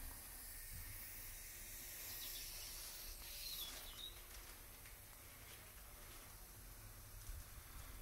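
Faint outdoor background noise with a low rumble, and one brief faint high chirp about three and a half seconds in.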